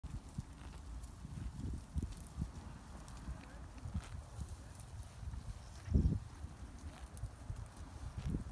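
Wind buffeting a phone microphone outdoors, an irregular low rumble that swells strongest about six seconds in, with scattered faint clicks.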